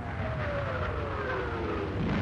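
Whistle of an incoming artillery shell, falling steadily in pitch over about two seconds, over a low rumble.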